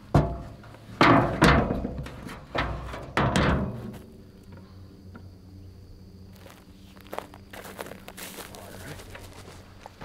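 An aluminium ladder being handled, with loud thunks and scrapes in the first four seconds, then quieter footsteps through dry grass and brush.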